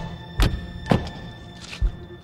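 Two car doors slam shut about half a second apart, over a film score, with a low thud near the end.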